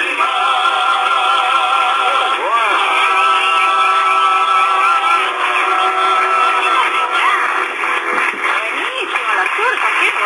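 Male voices singing a long held closing note in harmony in a folk song with acoustic guitar accompaniment; about seven seconds in, the held note gives way to voices talking.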